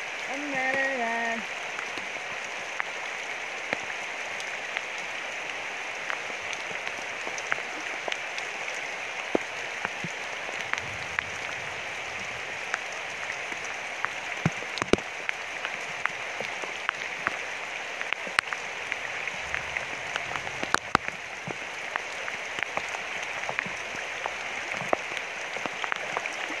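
Heavy tropical rain falling on a river's surface: a steady hiss with many sharp drop impacts scattered throughout.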